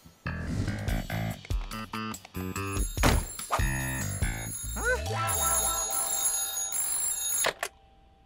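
A short, upbeat title-card music jingle for about five seconds, then a telephone ringing for about two seconds near the end, which cuts off suddenly.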